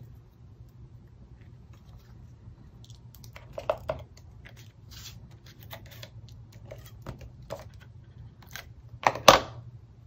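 Papercraft handling at a table: scattered small clicks and short rustles of a Fast Fuse adhesive applicator and card stock, with a sharper click and brief scrape about nine seconds in, over a faint low hum.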